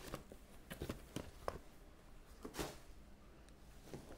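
Faint handling sounds of items being moved inside a cardboard box: a few light clicks and knocks, plus a short rustle about two and a half seconds in.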